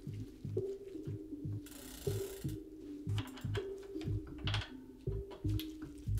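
Hex key working the pinch bolts on the left crank arm of a Hollowtech-style crankset: small, quiet metal clicks and a short scrape about two seconds in, over soft background music.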